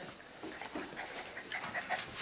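Two dogs play-wrestling, with panting and a few faint short squeaky whines about three-quarters of the way in.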